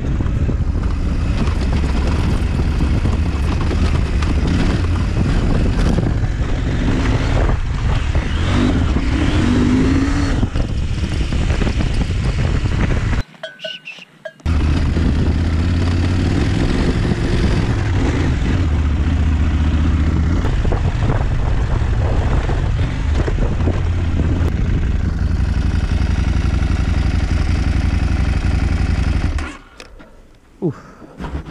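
KTM 790 Adventure S parallel-twin engine running under way as the motorcycle is ridden off-road over dirt and grass. The sound breaks off briefly about halfway through and drops away just before the end as the bike stops.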